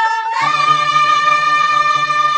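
Traditional Tibetan folk song: a high voice holds one long note that slides up a step about half a second in and stays there, over a low steady accompaniment that comes in at the same moment.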